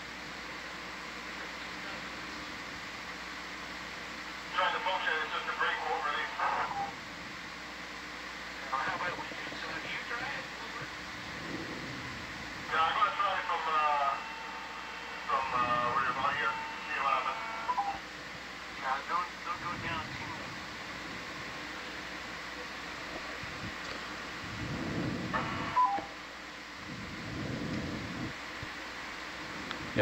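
Short snatches of thin, narrow-band voice chatter over a communications radio loop, too muffled to make out. Under it runs a steady background hiss and hum.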